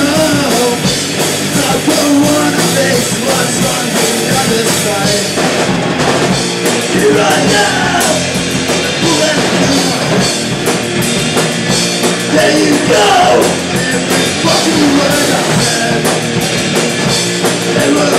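Live rock band playing loud: distorted electric guitars, bass guitar and drum kit.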